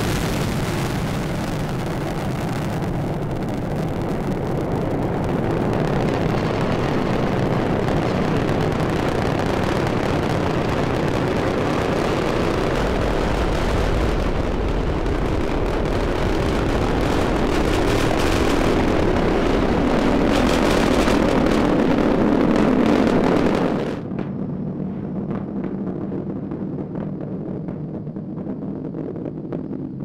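Space Shuttle launch: the main engines and solid rocket boosters at ignition and liftoff, a loud, steady roar. It drops suddenly to a much quieter low rumble about 24 seconds in.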